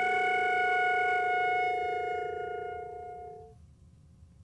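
Flute and violin holding long notes together in improvised music, the lower note having slid up just before; both die away about three and a half seconds in.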